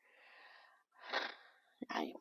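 A woman's soft, breathy laughter without voice: a faint breath, then a sharper burst of breath about a second in and a short one near the end.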